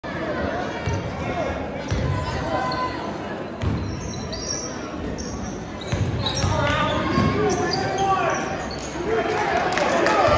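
Basketball bouncing on a hardwood gym floor, a few irregular thuds, with sneakers squeaking on the court and the sound echoing around the hall.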